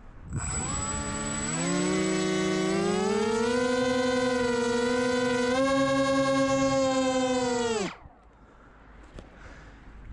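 Twin Turnigy 2826/6 2200 kV brushless motors on a small flying wing run up in the hand: a loud pitched whine that steps up in pitch several times as the throttle is raised, holds, then falls away and stops about eight seconds in when the throttle is cut. A thin steady high whistle sits above it while the motors run.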